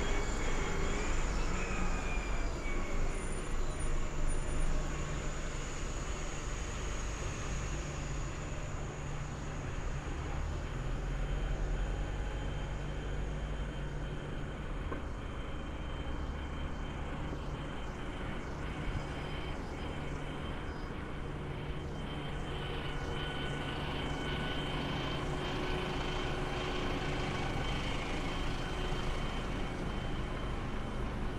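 Road traffic on a city street: buses and a truck running and passing, with a steady low engine hum throughout. A high, thin whine is heard early on and fades out over the first ten seconds or so.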